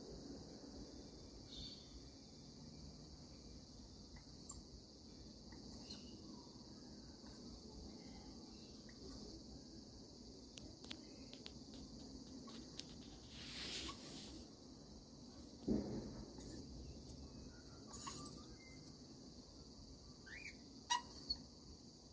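Short, high bird chirps every few seconds over a steady high-pitched insect drone, with a brief rustle and a low knock partway through.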